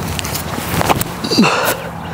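Wind rushing on the microphone, with a few knocks and scuffs around the middle from a disc golfer's footwork as he steps into a drive.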